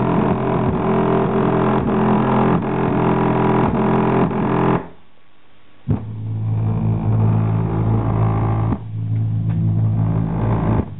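Bass-heavy music played loud through a GAS 8-inch subwoofer mounted in a scooter's body, driven by a GAS amplifier. The music cuts out suddenly about five seconds in for about a second, then comes back with a strong, steady low bass.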